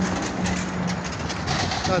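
Street traffic going by: a steady noisy rush of passing vehicles with a low steady hum that fades about two-thirds of the way through.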